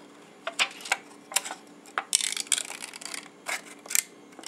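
Scissors snipping through thin aluminum drink-can sheet, cutting out a traced circle: a run of sharp, irregular snips, with a longer continuous cut about two seconds in.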